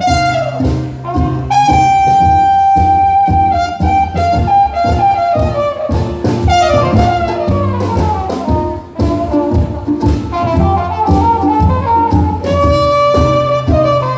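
Live jazz-style band music: a trumpet plays the lead melody in held notes and quick descending runs over low cello bass notes and strummed chords on an acoustic stringed instrument.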